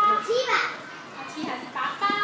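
Young children's high-pitched voices calling out and chattering, with a lull in the middle.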